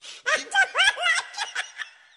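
High-pitched giggling laughter in quick, repeated rising bursts, fading out near the end.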